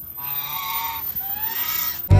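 Domestic geese honking: two calls, the second rising in pitch.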